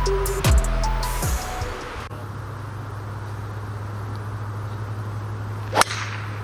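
Electronic background music with heavy bass that stops about two seconds in, leaving a steady low outdoor hum; near the end, a single sharp crack of a driver striking a golf ball off the tee, a skied drive.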